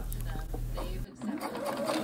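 Husqvarna Viking Designer 1 sewing machine running steadily, stitching a seam in cotton canvas, and cutting off about a second in.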